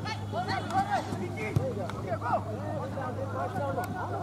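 Several voices shouting and calling over one another at a football match, over a steady low hum. A single sharp knock about one and a half seconds in.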